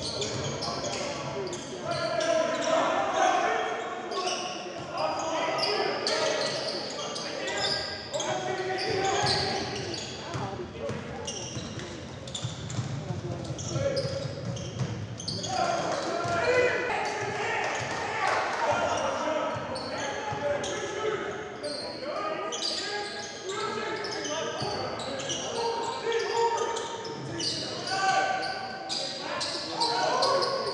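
Basketball game sound in a large gym: a ball dribbled on the hardwood court, with players and coaches calling out in the hall.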